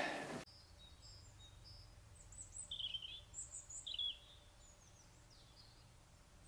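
Small birds chirping: a series of short, faint, high calls, the loudest few in the middle, over a faint steady background hum.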